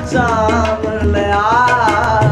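A young man singing a Sufi kalam in long, wavering, ornamented phrases, accompanied by harmonium and hand-drum strokes.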